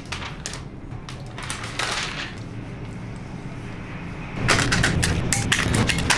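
Hobby knife scraping and cutting through masking tape stuck on a metal part, in short scratchy strokes with the rustle of the tape. It gets louder and busier near the end.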